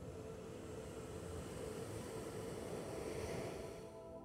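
Surf rushing up the beach, swelling to a peak and then cutting off sharply near the end, over soft ambient music with steady held tones.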